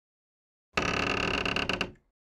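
Intro sound effect: one loud, dense burst about a second long that starts suddenly under a second in and cuts off near the end.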